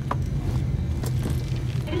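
Steady low drone of an airliner cabin, with a brief clink at the start and a few light clicks and rustles around the middle.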